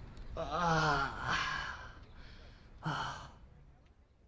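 A man crying in anguish: a long wavering wail about half a second in, a breathy sob after it, and a short gasping sob near the end.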